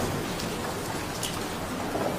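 A steady, even hiss of background noise in a pause in the speech.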